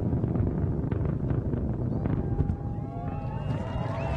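Antares 230 rocket's first stage, two RD-181 engines at full thrust, heard from the ground as a steady low rumble with scattered crackles during ascent.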